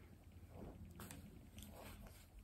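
Near silence: room tone with a few faint, soft rustles.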